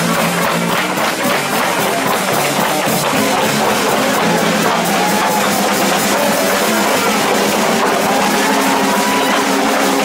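A live street jazz band playing: trombone over a drum kit, with cymbals keeping a steady beat.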